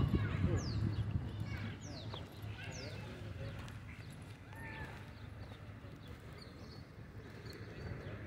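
Faint outdoor ambience: a steady low rumble with distant voices and a few short, high, falling chirps in the first few seconds.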